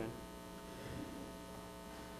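Steady electrical hum made of several even tones, with a brief soft sound right at the start.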